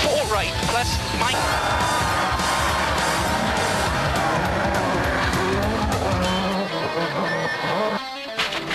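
Subaru rally car at speed on a stage, engine running hard with tyres skidding and squealing, mixed under background music.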